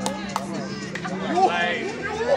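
Field hockey sticks clacking sharply on the ball several times, mixed with players' shouts and calls, one loud call about one and a half seconds in.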